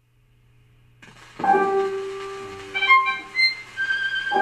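A shellac 78 rpm (SP) record playing through a tube amplifier and a small ALTEC 12 cm speaker in a cat-food-tin box, picked up by microphones in the room. A faint low hum comes first, the record's surface hiss joins about a second in, and classical-sounding instrumental music begins about a second and a half in.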